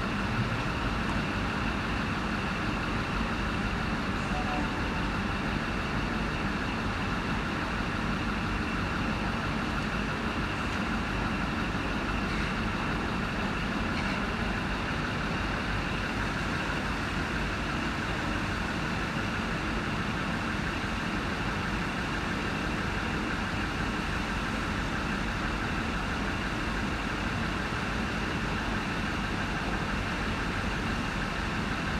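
Steady idling rumble and hum of trains standing at a station platform, a diesel rail motor and an electric train among them, with faint steady high tones over a constant low rumble.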